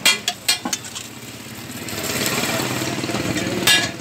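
A metal spatula clanks and scrapes against a flat steel griddle: a few sharp clanks in the first second and again near the end, with a steady hiss in between.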